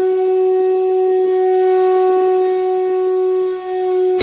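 A single long horn-like note, blown and held steady at one pitch, dipping briefly near the end.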